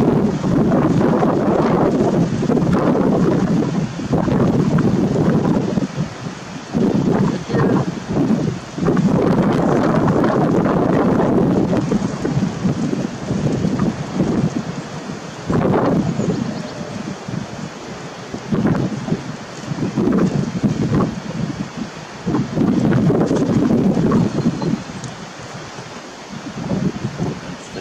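Wind buffeting the camera microphone: a low, gusty noise that swells and drops every few seconds.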